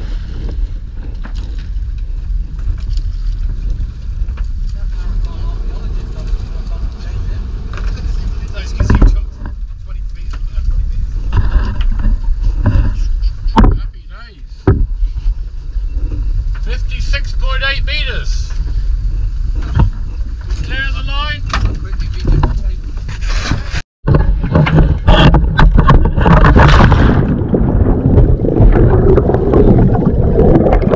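A dive boat's engine running under way, with wind and water rushing past the hull. About 24 seconds in, the sound cuts off for a moment and gives way to a louder, denser rushing of water.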